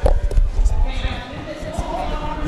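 Nearby voices picked up by a field-side microphone, over a low rumble that starts suddenly and is loudest in the first second.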